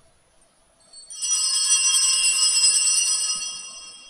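A cluster of small bells jingling rapidly, starting about a second in, ringing loudly for a couple of seconds and then fading.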